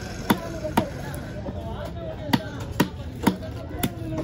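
Heavy cleaver chopping a large trevally into steaks on a wooden log block: about six sharp strikes, two early on, then a pause of more than a second, then four more, about half a second apart.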